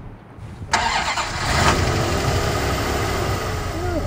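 The 1989 Dodge Dakota Shelby's 318 V8 starting. It catches almost at once, under a second in, rises briefly, then settles into a steady idle with a low rumble.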